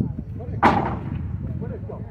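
A single loud bang about two-thirds of a second in, with a short ringing tail that fades within half a second.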